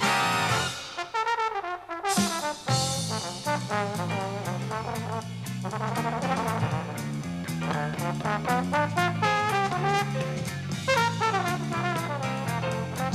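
Big band playing a swing-jazz instrumental, with trombones and trumpets in front of a walking electric bass line and drums. The band drops out briefly about a second in, then comes back in full about two seconds in.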